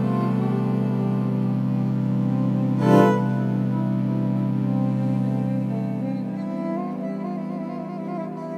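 Homemade electric viola with magnetic pickups playing a sustained low drone note with higher, wavering notes above it. A brief loud, scratchy surge comes about three seconds in, and the low drone drops away about six and a half seconds in.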